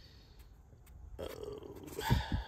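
A man's drawn-out "uh" hesitation, starting a little past halfway after a quiet pause.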